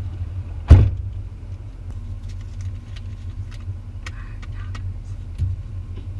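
Rear door of a Ford F-150 pickup slammed shut about a second in, the loudest sound, over the steady low hum of the truck idling. There are light clicks and rattles from the cab afterwards and a softer thump near the end.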